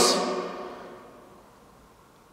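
The tail of a man's loudly called question ringing on in the long echo of a large hard-walled prison hall, fading away over about a second and a half into near quiet.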